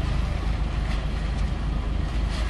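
A car engine idling, heard from inside the cabin as a steady low rumble.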